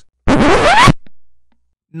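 Record-scratch sound effect: one loud scratch lasting under a second, its pitch sliding upward, with a short fading tail. It signals an abrupt interruption, a 'stop right there' gag.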